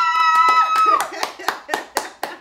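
Family members clapping and cheering: a long high cheer held for about a second, with quick hand claps, about six a second, going on after it.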